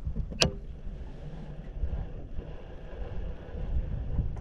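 Wind noise on the microphone of a camera mounted at the base of a fishing rod, with one sharp click about half a second in.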